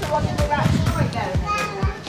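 Children's voices and chatter over background music with a steady beat of about two thumps a second.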